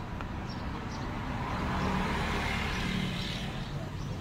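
Steady background rumble of road traffic, swelling a little in the middle.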